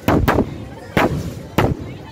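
Aerial fireworks exploding overhead: four sharp bangs in two seconds, the first two close together, each ringing out briefly.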